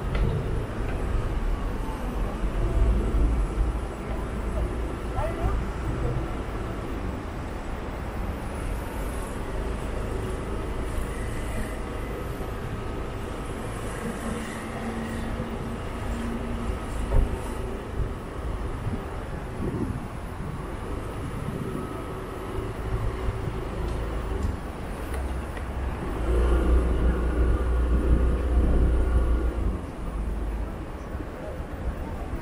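City street traffic: cars passing along the road, with a steady low rumble. A vehicle goes by louder near the end.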